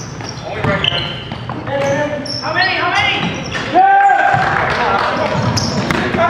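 A basketball being dribbled on a hardwood gym court, with sneakers squeaking and players' voices during live play, all ringing in a large gym. A louder, pitched, arching sound comes about four seconds in.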